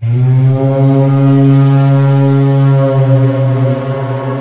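A loud, low horn-like drone, one held note rich in overtones, that starts suddenly after a brief silence and is held for about four seconds before easing off into ambient music.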